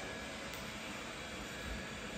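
Faint, steady background noise with no distinct event: the room tone of a quiet house.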